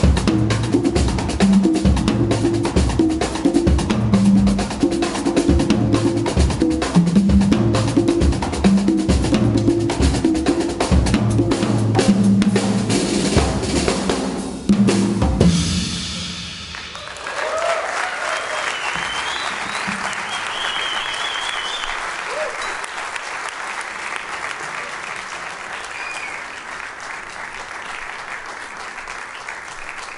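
Drum kit and congas playing the closing stretch of a Latin jazz percussion piece, ending on a final hit about halfway through. Audience applause follows, with a few whistles.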